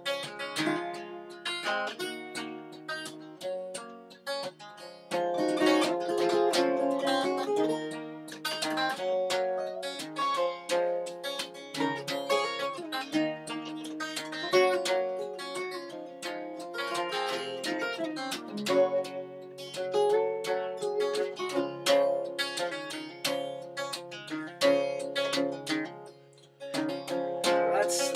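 Acoustic guitars playing an instrumental break in a folk song, picked and strummed, with no singing.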